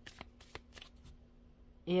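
Tarot cards being shuffled by hand: a scatter of light, sharp card clicks, thickest in the first second and fading after.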